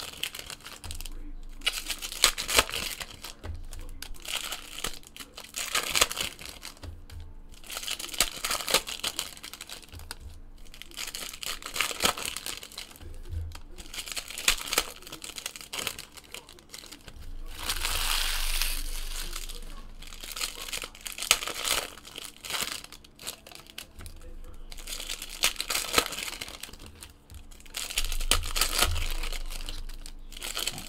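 Trading-card pack wrappers being torn open and crinkled by hand, in a series of rustling bursts with brief pauses between them.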